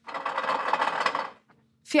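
A mechanical rattling buzz, a sound effect for the mock lie-detector machine, lasting about a second and a half and cutting off fairly sharply.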